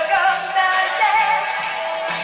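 A woman singing live into a handheld microphone over instrumental pop backing, holding long notes with a wavering vibrato.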